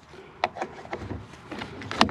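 A wooden board being set into a plastic pocket hole jig: a sharp knock about half a second in, then lighter knocks and rubbing as the board is positioned.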